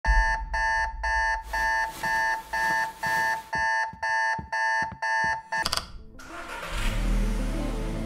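Electronic alarm beeping, about two short beeps a second, eleven times, then cut off by a click just before six seconds in. A low swell of music then rises.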